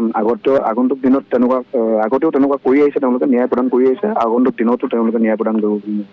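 A man speaking without a break over a telephone line, the voice thin and cut off at the top as phone audio is.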